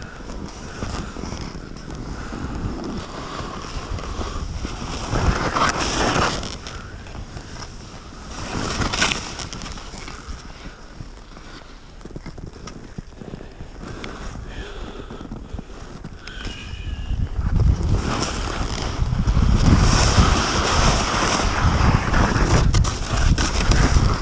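Wind rushing over a helmet camera's microphone and skis hissing through deep powder snow on an off-piste descent, swelling in surges and loudest in the last six seconds.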